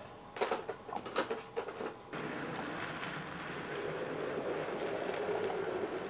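A few light clicks and taps as an N gauge coach is set onto the track, then, from about two seconds in, the steady running sound of an N gauge model train, its small locomotive and coaches rolling on the track, growing slightly louder.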